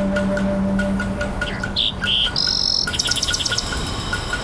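Birdsong layered into a relaxation music track: two short high chirps, a clear held whistle, then a rapid trill in the second half. Underneath, a held low note fades out about a second in, and a soft tick runs about four times a second.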